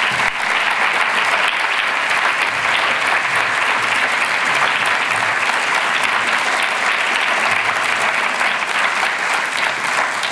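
Large audience applauding steadily, a dense clatter of many hands clapping.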